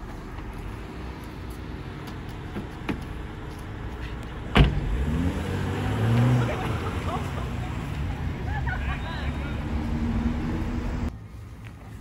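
Steady low rumble of wind and traffic in an open-air parking lot, with a single loud thud about four and a half seconds in and low voices after it.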